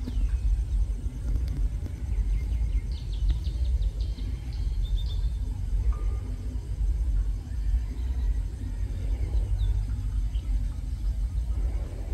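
Low, steady rumble of a diesel locomotive running as it approaches slowly along the track. Birds chirp in quick short calls about three to five seconds in.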